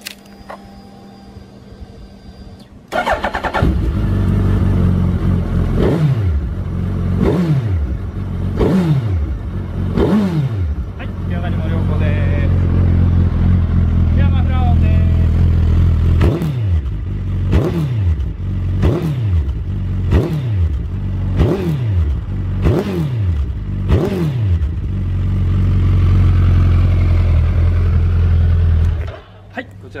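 Suzuki GSX1300R Hayabusa's inline-four engine, exhausting through Yoshimura carbon twin mufflers, starting about three seconds in and settling to a steady idle. It is revved in quick throttle blips, each rising and falling straight back to idle, a few in a row about a second and a half apart and then a longer run of them, before the sound cuts off near the end.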